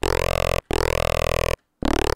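Distorted saw-wave synth notes from Bitwig's Polymer run through its Amp device. The frequency of the Amp's input EQ is being modulated, so a sweeping, vowel-like band moves through each note. Three held notes with short gaps between them.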